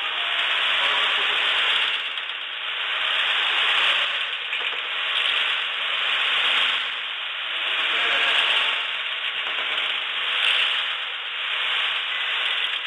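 A steady mechanical rattle and whirr that swells and eases every two seconds or so.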